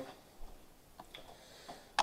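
Quiet room tone with a few faint clicks and light knocks from a hand-held camera being handled and moved, ending in one sharper click.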